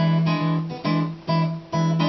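Steel-string acoustic guitar playing a blues accompaniment: short strummed chords about twice a second, each cut short before the next.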